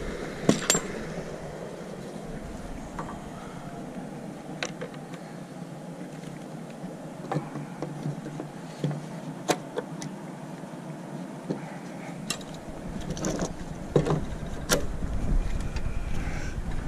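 Scattered sharp metal clicks and knocks as clamps are fitted and set over a steel bending strap on a wooden bending form, over a steady low rushing background. The knocks come more often near the end.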